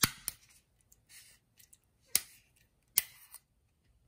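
Screw cap being twisted off an aluminium water bottle: a sharp crack as the seal breaks, a second click just after, then single sharp clicks about two and three seconds in, with faint scraping of the cap on the threads between them.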